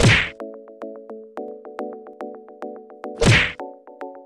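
Two whoosh transition sound effects, each a short swish with a low boom, one at the start and one about three seconds in, over background music with held chords and a steady plucked beat.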